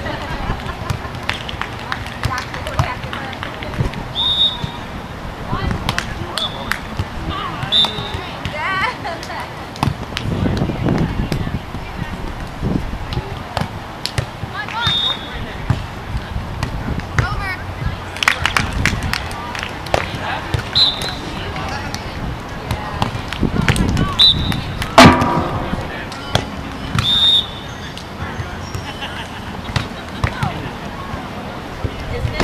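Outdoor beach volleyball play: volleyballs being struck by hands at irregular intervals, mixed with players' shouts and chatter across several courts.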